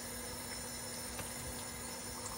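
Low, steady background noise with a faint constant hum and a couple of very faint ticks.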